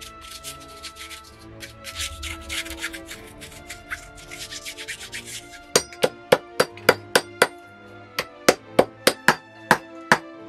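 A glue brush scrubbing back and forth over the leather lasting margin of a shoe, then, about six seconds in, a shoemaker's hammer striking the lasted calfskin edge in quick taps, about three to four a second, in two runs.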